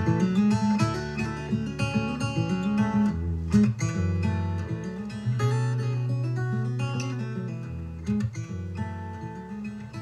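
Recorded instrumental music led by acoustic guitar, notes picked and strummed over low sustained notes. It grows steadily quieter through the second half, as if fading out.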